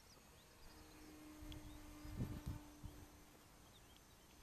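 Faint steady drone of a distant Carbon Cub light aircraft's engine and propeller as the plane climbs away. A few low bumps on the microphone come about two seconds in, and small birds chirp faintly.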